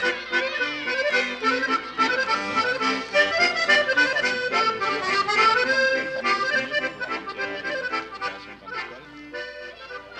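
Accordion music playing a melody over the soundtrack, growing quieter near the end.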